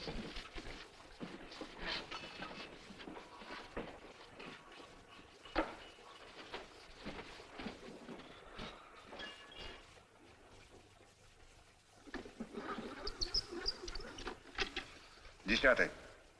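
Quiet, indistinct voices with a few soft clicks and knocks.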